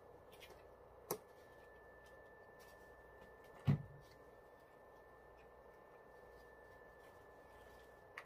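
A plastic squeeze sauce bottle being closed and put down: a sharp click about a second in as the flip cap snaps shut, then a dull thump a little before the middle, the loudest sound, as the bottle is set down.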